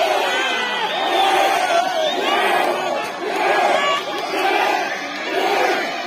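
Crowd of voices shouting and cheering on a tug-of-war, the shouts swelling together in a rhythmic chant about once a second.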